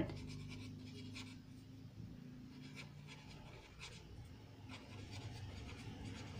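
A pen writing on notebook paper: faint scratching strokes.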